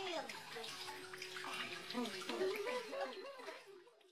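A young child's voice babbling and cooing in a wavering pitch over a faint hiss, fading out near the end.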